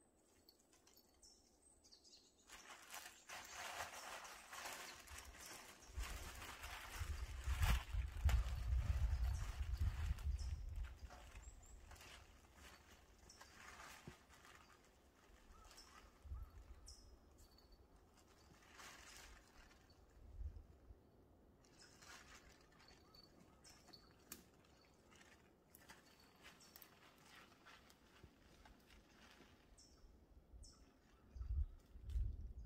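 Outdoor woodland ambience: a gust of wind rushes for several seconds in the first third, rumbling on the microphone, then dies back to a quieter background. Faint short bird chirps and scattered crackles of dry leaves and twigs come through now and then.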